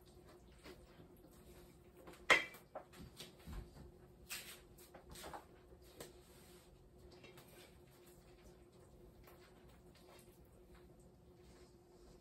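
Dough being mixed by hand with a spatula in a stainless steel bowl: one sharp knock about two seconds in, then a few short scrapes and rustles, with a faint steady hum beneath.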